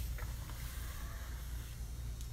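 Faint scraping of a steel trowel drawn over damp Venetian plaster on a wall, over a steady low hum.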